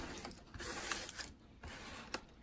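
Faint rustling and a few light clicks from handling a potted plant in its cardboard shipping box, with a quieter moment about midway.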